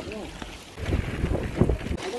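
Mountain bike setting off on a dirt track: wind buffeting the handlebar camera's microphone and tyres rolling, a low rumble that grows louder about a second in.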